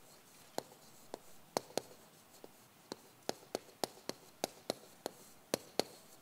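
Chalk writing on a chalkboard: a string of short, sharp taps as each stroke is made, irregularly spaced at about two or three a second.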